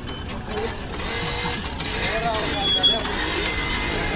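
Street noise: several people talking at once while a motorcycle engine runs past.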